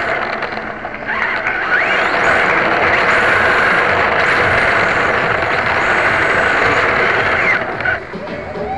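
Electric 1/10 RC drift car on an MST chassis, heard from a camera mounted on the car: the motor's whine glides up and down in pitch as it is throttled, over a loud hiss of the tyres sliding on the tiled floor. It builds about a second in and drops away near the end.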